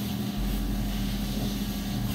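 Steady background hum and hiss of running machinery or ventilation, with a low rumble starting about half a second in.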